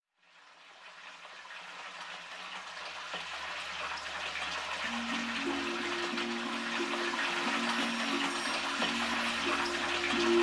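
Steady rushing or pattering water noise fading in from silence and growing gradually louder. Soft background music enters about halfway with slow, sustained low notes.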